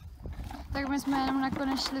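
A young woman speaking in Czech, starting about two-thirds of a second in after a brief quiet stretch; no other sound stands out.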